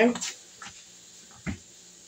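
Shrimp sizzling faintly in a pan, with one short sharp click about one and a half seconds in.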